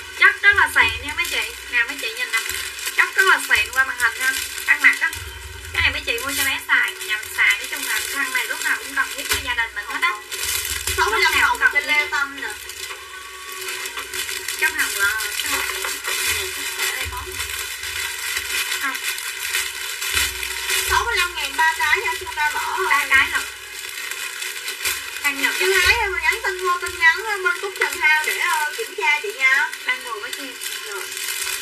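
A person's voice in uneven stretches, with a steady hiss underneath.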